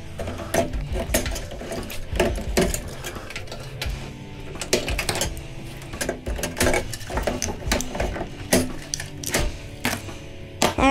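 Irregular metal clicks and clatter of a screwdriver and pliers working inside a microwave oven's sheet-metal housing as it is taken apart, over background music.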